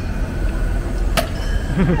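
Steady low rumble of street traffic, with one sharp click about a second in.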